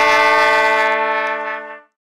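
Trumpet music ending on a long held chord that fades out shortly before the end.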